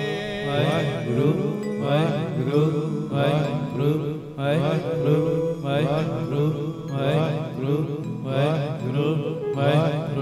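Male voices singing Gurbani kirtan in a flowing, melismatic chant over a steady low drone, with phrases rising and falling every second or so.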